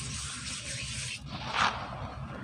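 Dry powdered cement rubbed between bare palms, a gritty dry rustle that breaks off suddenly about a second in. It is followed near the end by one short, louder crumble as a soft cement block gives way in the hands.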